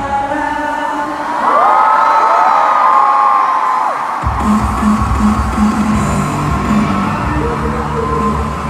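Live K-pop song in a large arena, heard from the stands: singing over a backing track with the crowd whooping. For the first four seconds the bass and beat drop away under long, held sung notes, then the beat comes back in.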